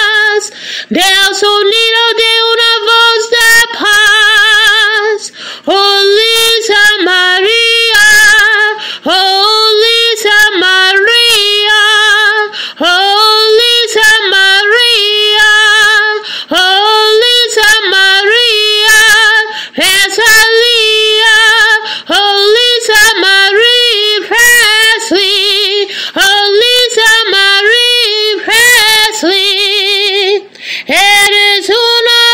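A woman singing solo and unaccompanied, in phrases of long held notes with wide vibrato.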